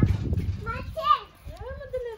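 A small child's high-pitched voice, talking in short bursts from about half a second in.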